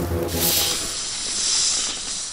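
A loud hiss that swells and then fades, as low music dies away at the start.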